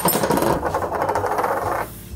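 Several coins of different sizes, pushed off a ledge together, landing on a tabletop and clattering and rattling against it and each other as they settle, the rattle stopping just before the end.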